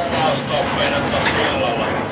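Indistinct voices talking over the low, steady running noise of a Dm7 diesel railcar.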